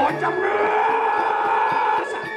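A voice gives a loud, drawn-out high cry that rises in pitch and then holds, over Balinese gamelan accompaniment whose metallophone strikes carry on more faintly beneath it.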